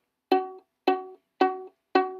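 Violin plucked pizzicato four times, about half a second apart, on the note F sharp, second finger on the D string. Each note starts sharply and dies away quickly.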